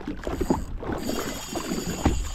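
Choppy sea water slapping and splashing against the hull of a drifting jet ski, over a low rumble. A faint, steady high whine comes in about a second in.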